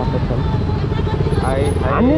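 Motorcycle engine idling while stopped in street traffic, a steady low running note. Voices come in briefly near the end.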